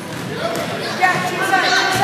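Voices of players and spectators in a gymnasium, with a basketball bouncing on the hardwood floor.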